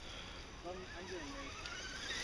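Faint whine of a scale RC crawler's electric motor, rising steadily in pitch as the truck is driven over the dirt, with a faint distant voice in the middle.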